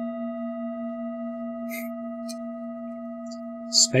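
A singing bowl ringing on after a single strike, its low hum and several higher overtones held steady and fading only slowly.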